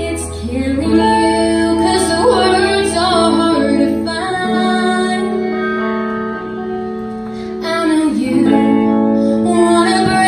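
A woman singing a country song live with a band, backed by electric bass, electric guitar and drums. She sings held, gliding notes.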